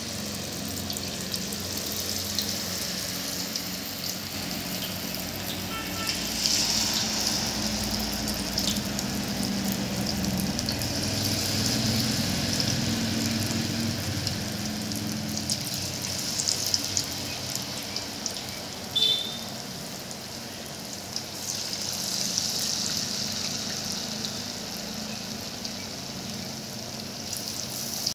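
Spiced vegetable mixture deep-frying in hot oil in a kadai: a steady sizzle and bubbling that swells a few times.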